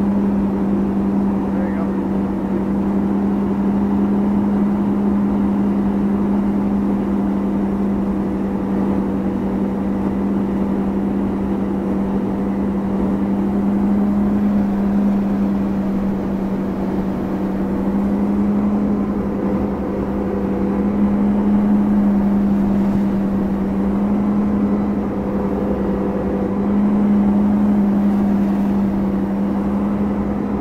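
Tow boat's engine running at a steady speed under load, a constant loud drone whose pitch wavers only slightly.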